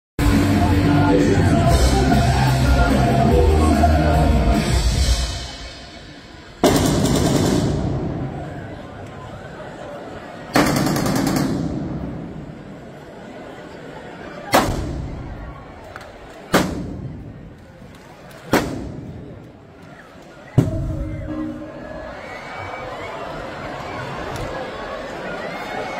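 A series of six explosive blasts set off in the old station building, each a sudden bang that dies away slowly; the first two come about four seconds apart, the last four about two seconds apart. Before the first blast there are a few seconds of sustained low tones.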